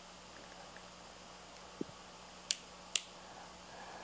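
Two sharp plastic clicks about half a second apart, after a soft knock, as a handheld digital multimeter is handled and a banana-plug test lead is plugged into its 20 A input.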